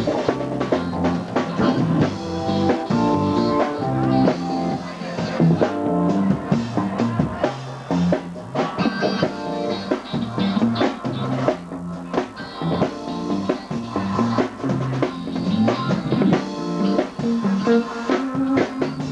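Live reggae band playing: electric guitar and bass over a drum kit keeping a steady beat.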